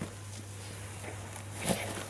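Soft rustling of a plush toy being handled and mouthed by a dog, with a short thump about three-quarters of the way through, over a steady low hum.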